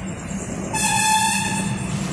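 A horn sounds once: a single steady tone held for about a second, over a steady low hum.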